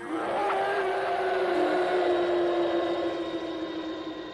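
Storm-wind sound effect for a blizzard: a whooshing wind noise that swells over the first couple of seconds and then slowly fades, with a held low tone sounding steadily beneath it.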